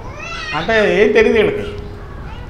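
A man speaking Telugu into a handheld microphone, his voice gliding up and down in drawn-out syllables. Under it runs a steady tone.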